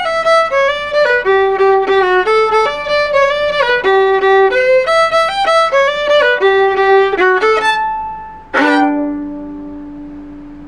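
Solo violin playing a bowed huapango (son huasteco) melody in quick separate notes. It ends about eight and a half seconds in on a long low final note that rings and fades away.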